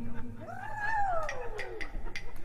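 A cat meows once, a drawn-out call that rises and then falls in pitch. Under it a low marimba note rings out and dies away near the start, with a few light clicks.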